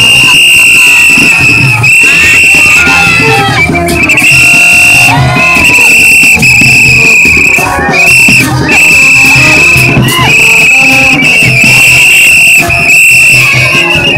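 Loud gagá street-band music: a shrill high tone blown in blasts of about a second each, again and again, over percussion and crowd voices.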